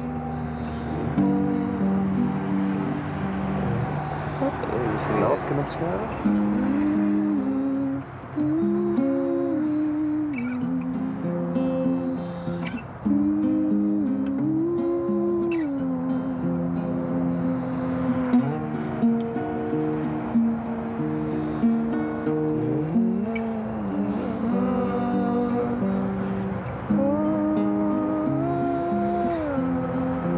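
A Taylor steel-string acoustic guitar being played, with a man humming a wordless melody along with it; the playing breaks off briefly twice.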